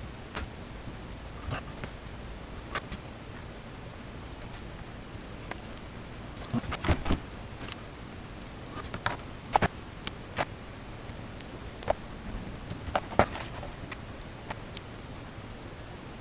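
Scattered small clicks and taps of a soldering iron, wire and LED strip being handled on a desktop cutting mat during bench soldering, over a faint steady room hum. A few isolated ticks come early, then a cluster of sharper clicks about seven seconds in and more between about nine and thirteen seconds.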